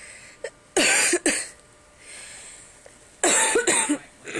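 A person coughing close to the microphone: two bouts about two seconds apart, each of two quick coughs.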